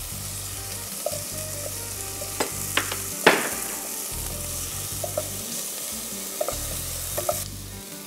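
Diced chicken and carrot sizzling in hot oil in a pot as they are stirred. A few sharp knocks of the spoon on the pot come a couple of seconds in, the loudest about three seconds in. The sizzle drops away near the end.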